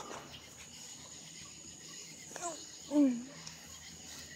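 Crickets trilling in a steady, even high tone, with a brief voice sound falling in pitch about three seconds in.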